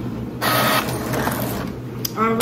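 HP all-in-one inkjet printer printing a page: its paper feed and print-head mechanism start running about half a second in, a dense mechanical whirr as the sheet is drawn through and comes out.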